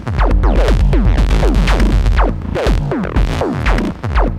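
Eurorack modular patch playing a techno kick fill: a rapid, even run of pitch-dropping kick drum hits from a Befaco Kickall, over the Basimilus Iteritas Alter percussive voice.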